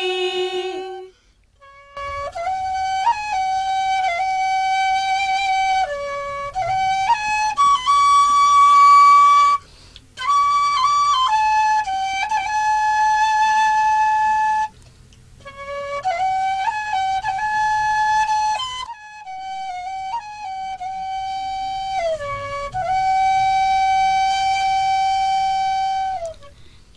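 A flute-like wind instrument plays a slow melody of long held notes with small pitch bends, in phrases broken by short pauses. This is an instrumental interlude between the sung verses of a Tày folk song.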